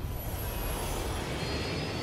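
Steady low rumble from a movie trailer's sound design, with a faint high whine over it.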